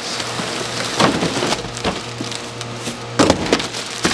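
Plastic wrapping and cardboard as a packaged booster seat is slid out of its box: a steady crinkling and rustling, with sharper crackles about a second in and a louder cluster just past three seconds.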